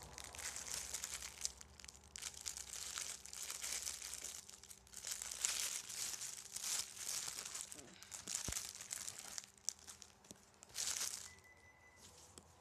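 Clear plastic packaging bag crinkling and rustling in irregular bursts as it is handled and opened. The rustling dies away about a second before the end.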